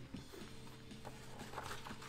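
Faint paper handling as a comic book's glossy cover is lifted and the book is opened, with soft rustles and small taps. Under it runs a faint, steady low hum.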